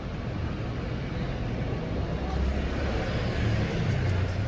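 Urban street traffic noise with a low rumble, growing louder in the second half as a vehicle passes close by.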